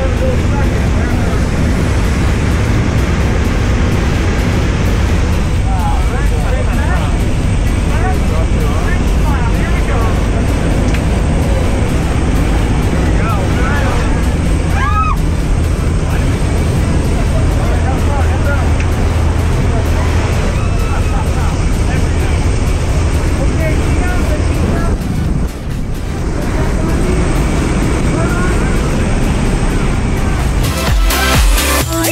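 Steady engine and wind roar inside the cabin of a propeller jump plane in flight, with indistinct voices under it. The level dips briefly near the end.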